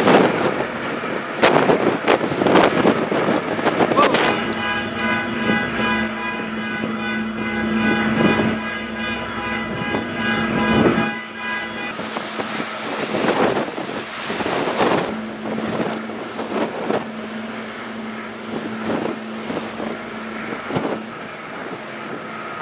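A passenger ferry's engines droning steadily, with a low hum and, for several seconds, a stack of steady higher tones that cuts off about halfway through. Wind buffets the microphone, and in the second half water rushes and churns along the hull.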